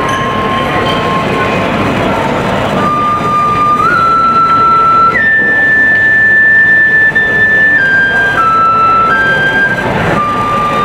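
Shinobue, a Japanese bamboo transverse flute, playing a slow melody of long held notes over a steady wash of background noise. A low note is held, with a short break about two seconds in, then the pitch steps up twice to a high note held for nearly three seconds from about halfway, before stepping back down near the end.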